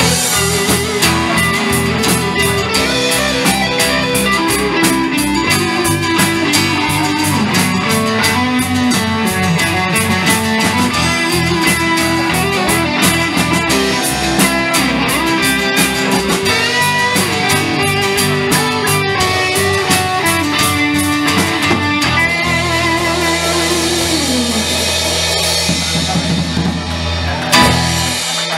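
Live rock band playing an instrumental passage: an electric lead guitar line over strummed acoustic guitar, bass and a steadily beating drum kit. About 22 seconds in the band holds a final chord under a cymbal wash, which stops just before the end.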